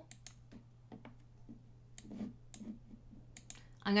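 Computer mouse clicking: about ten light, scattered clicks over a few seconds.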